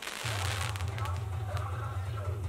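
A pyrotechnic blast hisses and crackles in the first second. From about a quarter second in, a deep, sustained bass from a DJ sound system sets in, with crowd voices underneath.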